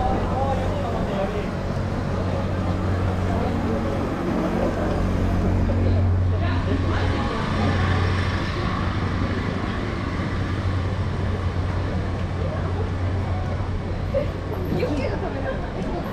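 Busy night street ambience: a steady low engine hum with passing traffic that swells briefly midway, and scattered voices of passers-by.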